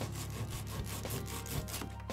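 A hand saw cutting off the protruding end of a wooden dowel flush with a pine board, in rapid back-and-forth strokes.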